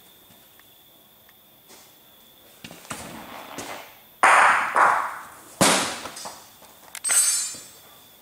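Several sharp knocks of bocce balls on an indoor court, the loudest about four and five and a half seconds in, another near seven seconds, each ringing briefly in the hall.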